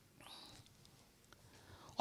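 Near silence, with one faint breathy sound, like a short breath, in the first half second.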